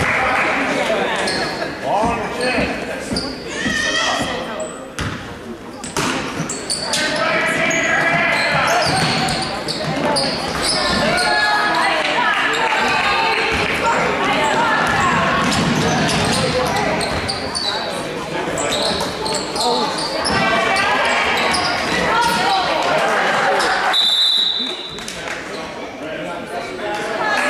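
Basketball being dribbled on a hardwood gym court amid players' and spectators' voices during a game. Near the end comes a short, high, steady whistle blast, a referee's whistle stopping play.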